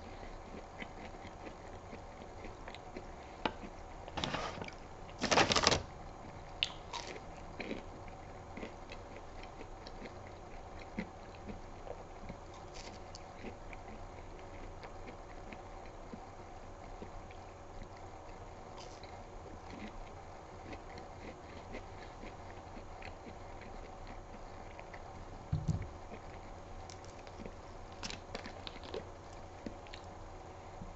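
Faint chewing and mouth sounds of someone eating breaded jalapeño cheddar bites, with small scattered clicks over a steady low room hum. A short, louder burst of noise comes about five seconds in, and a dull bump near the end.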